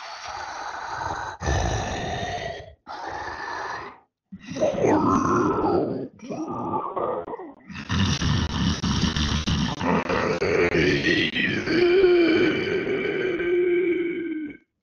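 Tyrannosaurus rex creature sound effects: a run of about six separate growling calls with short gaps between them, the last one the longest at about six seconds.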